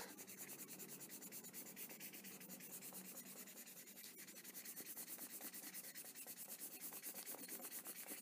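Faint scratching of a felt-tip marker colouring on paper, in quick, even back-and-forth strokes.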